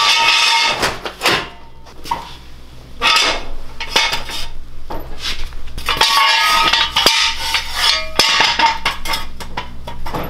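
Steel jack stands and a floor jack clanking and clinking as a go-kart is jacked up and set on stands: a run of irregular metallic knocks and rattles, some ringing briefly.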